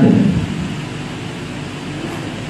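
Steady background hiss of room noise, with the last of a man's voice fading in the first moment.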